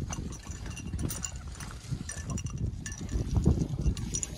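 Climbing shoes and hands scuffing and tapping on the rock as the climber moves up, with scattered small clicks, over an uneven low rumble of wind on the microphone.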